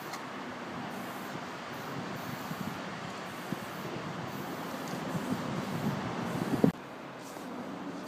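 A steady rumbling rush of vehicle noise that slowly grows louder, then cuts off abruptly near the end.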